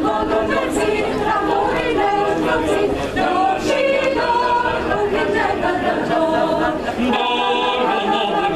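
Mixed choir of men and women singing a cappella, several voices together in a steady, unbroken line.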